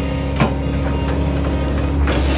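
Case excavator's diesel engine running steadily under work, with a single sharp knock about half a second in.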